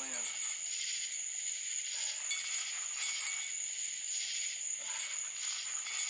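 Chorus of night insects: a steady high-pitched whine under a shriller pulsing call that swells about once a second.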